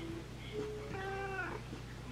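A house cat meowing once, a short, fairly quiet meow about a second in.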